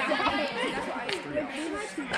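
Several voices talking and calling out over one another, no single word standing clear.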